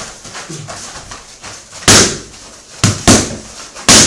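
Strikes landing on handheld striking mitts, four sharp slaps: one about two seconds in, a quick pair near three seconds, and one at the very end.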